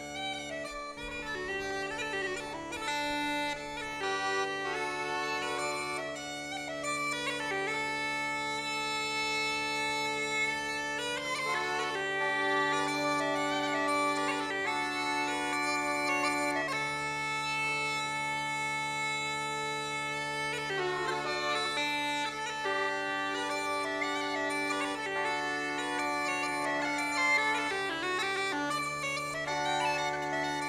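Bagpipes playing a melody of long held notes over a steady, unbroken drone.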